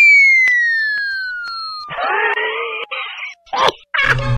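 A long falling whistle tone, sliding steadily down from high to low over about three and a half seconds. About two seconds in, a harsh, noisy cry joins it for about a second.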